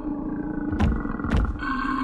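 Horror-film soundtrack: a sustained, growl-like creature sound on steady held tones, with two sharp clicks about half a second apart near the middle.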